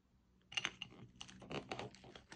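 Small handwork noises: a quick, dense run of light clicks and scrapes begins about half a second in.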